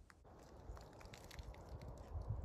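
Near silence: faint outdoor quiet with a few scattered light ticks and crackles.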